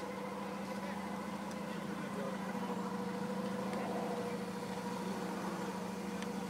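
A steady, constant-pitched engine hum, like a motor idling nearby.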